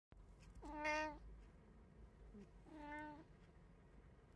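A domestic cat meowing twice, about two seconds apart. Both are short, even-pitched meows, and the first is louder.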